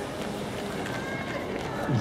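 Runners' footsteps on a paved path, faint repeated ticks over a low outdoor background with faint distant voices.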